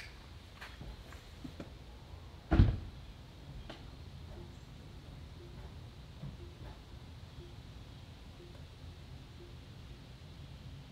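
Car door and cabin handling sounds: a few light clicks and one dull thump about two and a half seconds in, then a faint short beep repeating about once a second.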